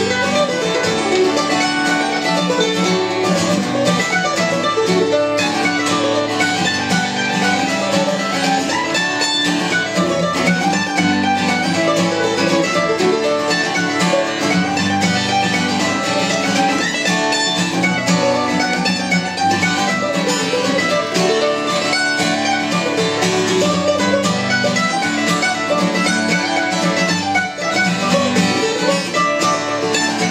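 Acoustic guitar and mandolin playing a Celtic-style tune together, with continuous plucked and strummed notes.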